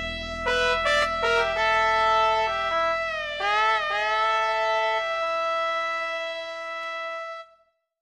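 Instrumental outro of the song's backing track, with no voice. A short stepped melody plays over a steady held note and bends in pitch about three and a half seconds in. A final held chord then fades out and stops about seven and a half seconds in.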